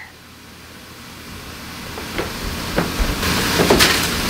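Rustling that grows louder, with a few clicks and knocks near the end, as a pantry door is opened and a plastic bag of potatoes is taken out.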